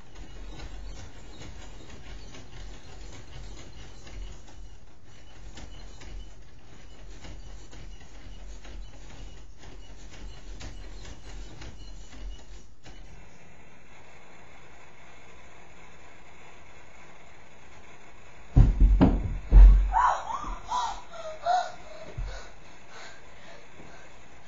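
Faint steady hiss, then about three-quarters of the way through a few seconds of loud thumps mixed with short squeaky sounds.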